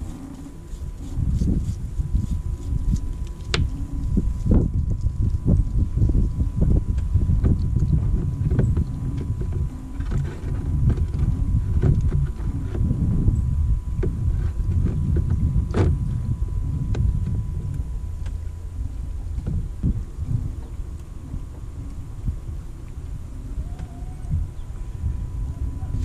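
Small metal parts of a Harken winch being scrubbed and handled while old hardened grease is cleaned off, heard as scattered sharp clicks and knocks. A steady low rumble runs under it throughout.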